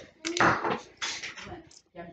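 Loose copper pennies clicking against one another as a hand picks through a pile of them on a cloth, a few separate light clicks.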